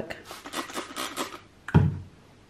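Trigger spray bottle filled with vinegar squirted several times in quick succession onto chips, short hissing sprays, followed by a brief loud sound near the end.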